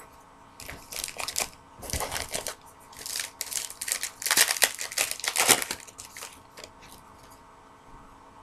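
Wrapper of a baseball card pack crinkling and tearing as it is opened, in irregular rustling bursts that are loudest around the middle and die down near the end.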